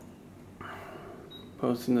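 Quiet room tone with a brief soft rustle about half a second in, then a man's voice starts speaking near the end.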